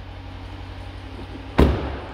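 A car's driver's door is shut once, a single heavy thud about a second and a half in, over a steady low hum.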